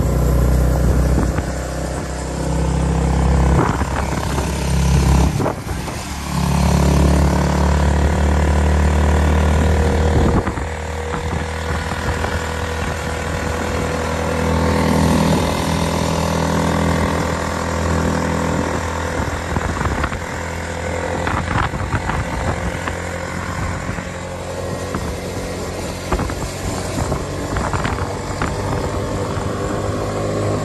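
Motorcycle engine running steadily as the bike rides along a road, with heavy wind rumble on the microphone. It is loudest in the first ten seconds, with a brief drop around five seconds in, then runs on a little quieter.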